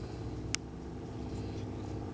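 Steady low drone of a distant airplane's engine, holding one pitch, with a single short sharp click about half a second in.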